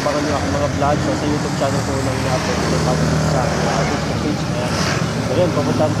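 Indistinct speech over steady road-traffic noise.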